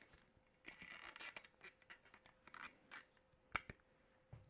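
Faint rustling and scraping as earmuffs are pulled on over the head and safety glasses are slipped on, with two sharp clicks a little after three and a half seconds.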